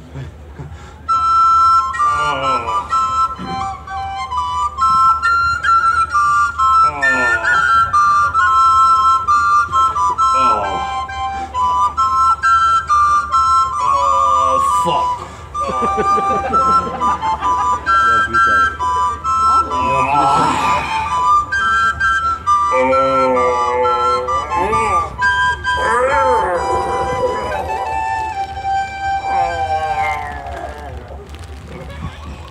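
Two flutes playing a duet melody in short, high notes that step between a few pitches, with sliding, swooping sounds and voices mixed in at times.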